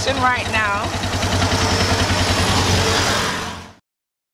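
Tuk-tuk (motor tricycle) engine running steadily while riding along, with a person's voice over it in the first second. The sound fades out just before the end.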